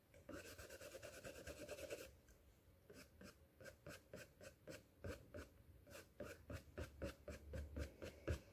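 Faint scratchy strokes of a thin paintbrush flicking acrylic paint onto canvas. There is a quick run of short strokes, a lull about two seconds in, then more strokes from about five seconds.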